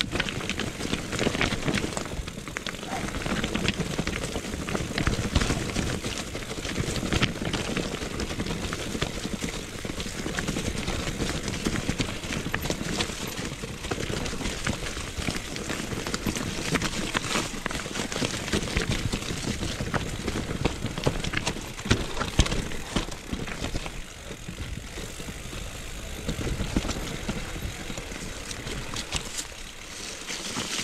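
Mountain bike riding down a rough forest singletrack: continuous tyre noise over dirt, stones and dry leaves, with frequent rattles and knocks from the bike.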